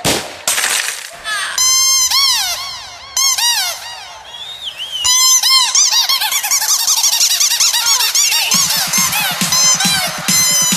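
Electronic dance music in a breakdown: the kick and bass drop out, and a squeaky, chirping lead of quick rising-and-falling glides repeats, with a long falling sweep in the middle. The pounding beat comes back in near the end.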